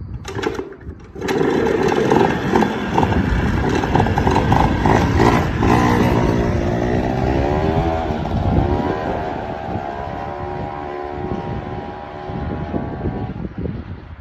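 Small petrol engine on a motorised wheelbarrow revving up about a second in and running as the barrow is ridden off, its pitch rising and falling mid-way, then slowly fading as it moves away.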